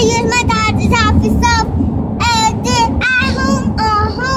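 A young girl singing a run of short, very high-pitched wordless notes that slide up and down. Under it runs the steady low rumble of road noise inside a moving car's cabin.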